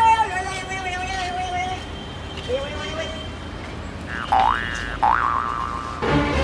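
Cartoon-style comedy sound effects: a held tone for the first second and a half, then two quick swooping pitch glides about a second apart near the end.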